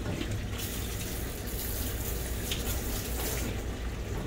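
Water spraying from a handheld pet-wash hose sprayer onto a Great Dane's coat, a steady hiss that dies down shortly before the end.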